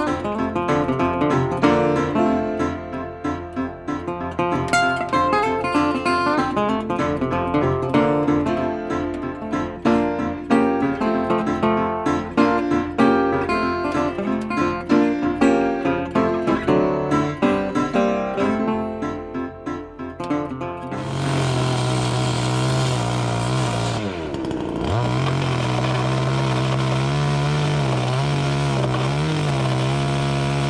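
Acoustic guitar music for about the first two-thirds, then a loud power tool runs steadily for the rest, its pitch dipping once and recovering as it works timber.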